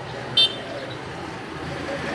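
Steady street traffic noise from passing motorbikes and cars, with a single short high-pitched chirp about half a second in.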